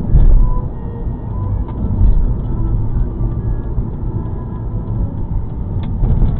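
Steady low rumble of a car's engine and tyres inside the moving car's cabin, with a few faint brief clicks.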